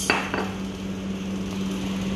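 Kitchenware knocked on a stone countertop just after the start, a short knock and clink with brief ringing, over a steady low hum.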